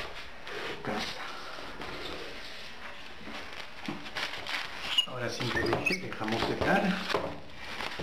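Indistinct talking in the second half, over quiet scattered handling noises and light knocks as things are moved about close to the microphone.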